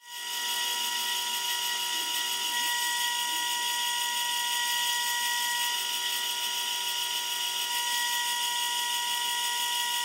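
Small metal lathe running with a steady high-pitched whine while wet sandpaper rubs on a spinning acrylic sleeve at the 600-grit stage of polishing. The sound fades in just after the start.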